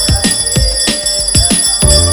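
Hindu aarti music: a drum beating about three to four strokes a second under the steady high ringing of bells.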